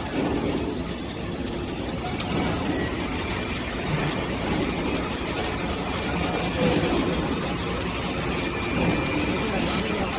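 Steady machinery noise with indistinct voices mixed in.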